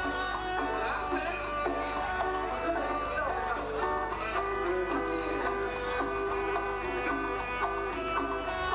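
Live Latin dance band playing, with guitar and percussion over a steady dance rhythm.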